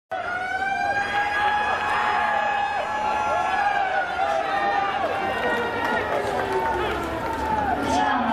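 Brass band and massed voices of a university cheering section holding one long note that sags slightly in pitch, with shorter shouted calls dipping in and out around it.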